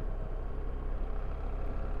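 BMW R1300GSA boxer-twin engine running at steady revs while the motorcycle is ridden, a low, even drone.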